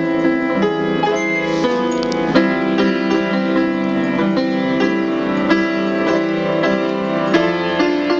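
Solo piano playing on an electronic keyboard: a slow popular-song ballad with sustained chords under the melody, notes struck every fraction of a second.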